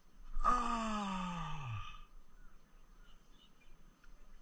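A man's long, breathy groan, falling steadily in pitch and lasting about a second and a half from shortly after the start: a groan of dismay.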